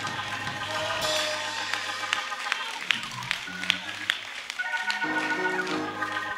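Soft organ music holding sustained chords, changing to a new chord about five seconds in, with a few faint taps.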